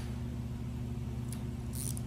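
A steady low electrical hum, with a few faint crackles from protective film being picked and peeled off a clear plastic sheet, mostly near the end.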